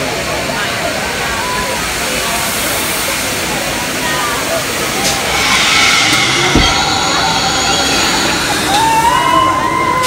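Voices around a free-fall drop-tower ride, then from about five seconds in a rushing hiss with a steady high whine as the seats fall. Near the end comes a long rising cry.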